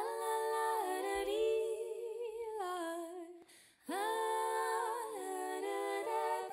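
Wordless female vocals in several-part harmony, held notes with vibrato that break off briefly past the middle and then return, with faint low notes underneath at times.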